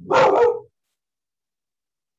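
A dog barks once, loudly, in the first half-second, picked up through a participant's microphone on a video call.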